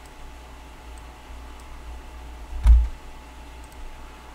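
A few faint clicks from working a computer at a desk, over a low steady hum. One thump about two and a half seconds in is the loudest sound.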